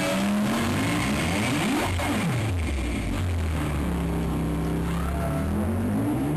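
A shoegaze rock band playing live: a loud, dense wall of distorted electric guitar and bass drones. Notes slide down and back up in pitch about two seconds in, and a rising sweep builds near the end.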